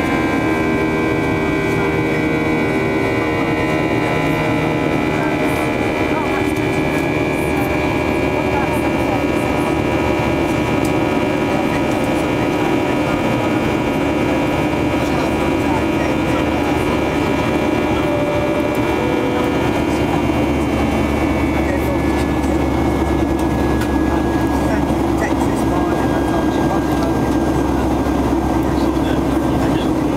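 Boeing 737-800 cabin noise heard beside its CFM56-7B turbofan engine during the climb: a steady engine rumble with several high whining tones. About two-thirds of the way through the whine drops slightly in pitch as the low rumble grows.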